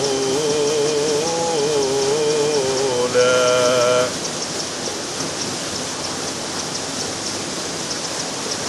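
Steady rushing of a small waterfall into a river pool. For the first four seconds a man's chanted Quran recitation holds one long, wavering note over it; the note then stops and only the water is left.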